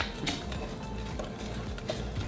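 Soft background music, with faint clinks of a metal spoon stirring sauce in a ceramic bowl.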